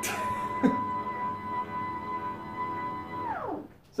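Electric sit-stand desk's lift motor whining at a steady pitch as the desk rises, with a short knock about two-thirds of a second in. Near the end the whine drops in pitch and stops as the desk reaches its highest setting.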